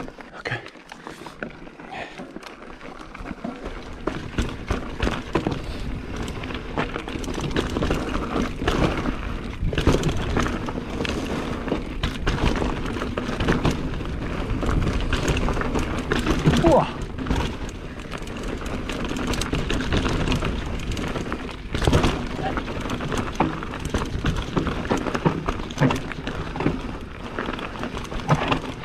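Mountain bike rolling down a dirt singletrack: tyres on dirt and roots with a dense rattle of clicks and knocks from the bike, and wind on the microphone.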